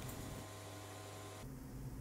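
Faint steady low hum with a light hiss; the hiss in the upper range drops away about one and a half seconds in.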